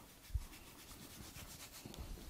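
Faint rubbing of a wipe against the skin at the back of the neck, drying off alcohol, with a soft low bump about a third of a second in.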